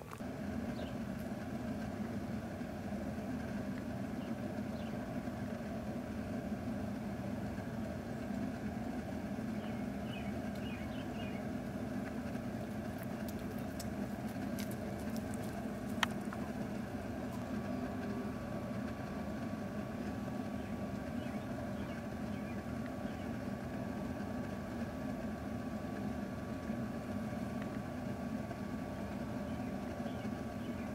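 A steady, even mechanical drone, like a motor or engine running, with one sharp click about halfway through.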